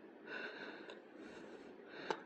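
Faint breathing close to the microphone, two soft breaths.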